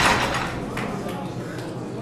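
A loaded barbell with bumper plates settles on the lifting platform after being dropped, with a faint knock about a second in, as the sound of the drop dies away.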